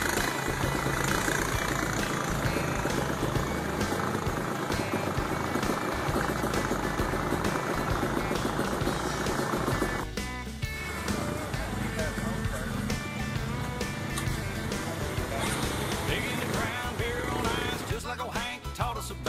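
ATV engines running as quads drive through a shallow creek, with water splashing and music playing underneath. The sound changes abruptly about ten seconds in, and people's voices come in after that.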